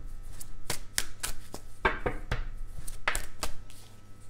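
A deck of tarot cards handled and shuffled by hand: irregular soft slaps and clicks of cards knocking together, about three a second.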